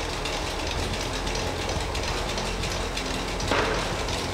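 Cashew cutting machine running: a steady mechanical hum with rapid fine clicking from its gear and blade mechanism.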